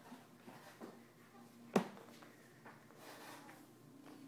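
Quiet room with a few faint small ticks and one sharp knock a little under two seconds in.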